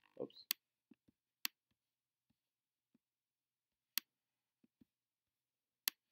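Four sharp, single clicks of a computer pointer button at uneven intervals, a second or more apart, with a few fainter ticks between them, as items in astronomy software are clicked and a menu is opened.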